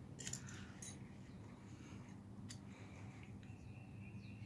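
Faint metallic clicks and short scrapes as a ferrocerium rod and its steel striker are picked up and handled: a quick cluster in the first second, then a single sharp click about two and a half seconds in.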